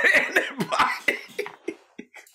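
A man coughing in a run of short bursts that weaken and die away about a second and a half in.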